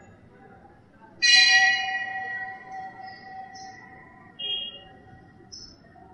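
A bell-like chime struck once about a second in, ringing with several tones and fading slowly over two to three seconds, followed by a few brief faint high tones.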